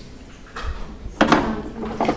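Quiet room noise with faint small knocks. About a second in, a short burst of a person's voice follows.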